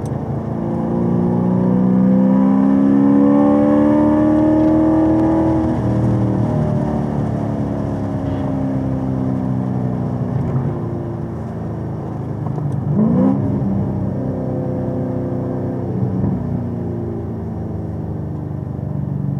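Supercharged 6.2-litre V8 of a Chevrolet Camaro ZL1 1LE on track. It pulls up through the revs in third gear, then eases off, and gives a quick rev blip about two-thirds of the way through as it shifts down to second.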